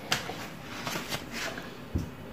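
Small plastic items handled on a kitchen countertop: a plastic bottle and a plastic measuring cup give a few light clicks and knocks, with a short low thump near the end.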